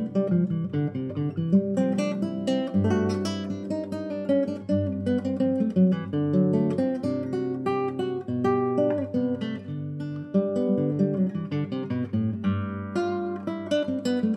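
Nylon-string classical guitar played fingerstyle with the flesh of the fingertips instead of nails: a continuous passage of plucked melody notes over ringing bass notes, played firmly for volume.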